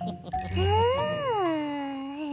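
A cartoon chime sound effect rings about half a second in. Over it, a cartoon girl gives one long vocal 'ooh' that rises and then slowly falls in pitch.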